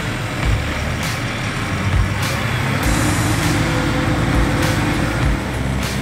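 Fendt tractor's diesel engine running steadily under load as it pulls a subsoiler through dry soil.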